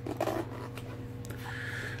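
Hands handling a soft fabric drone bag and working at its pocket zipper: a few short rasps and rustles, over a faint low steady hum.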